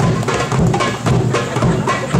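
Live hand-drum music, a frame drum among the drums, playing a steady dance rhythm of about four strokes a second.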